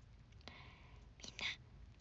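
A woman's faint whisper: a soft breathy sound about half a second in and a short hissy burst around a second and a half in.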